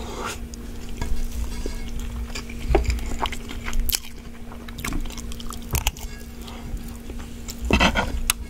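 Close-miked chewing of a mouthful of ramen fried rice, with wet mouth sounds and irregular clicks. Near the end a metal spoon scrapes against the pan, the loudest sound, over a steady low hum.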